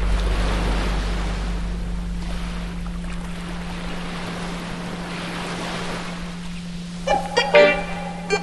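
Surf washing up on a sandy beach, with a steady low 174 Hz tone held underneath as the music fades away in the first second or so. About seven seconds in, a string of short, pitched bursts starts.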